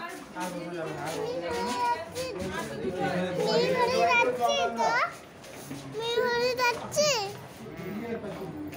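Many people talking at once, mostly children's voices calling and playing, with a high rising shout about five seconds in and another high cry about seven seconds in.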